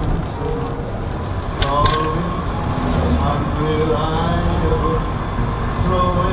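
Steady engine and road rumble of a car driving, heard from inside the cabin, with indistinct voices partly over it.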